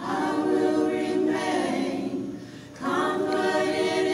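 Small vocal ensemble of men and women singing a cappella in harmony: one held phrase, a short break about two and a half seconds in, then the next phrase begins.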